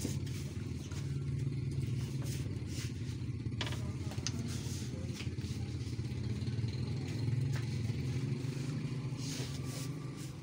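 A steady low engine hum runs throughout, with a few faint clicks and knocks over it.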